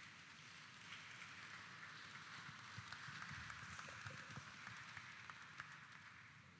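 Faint applause from a congregation, a soft patter of many hands that builds, holds and then fades near the end.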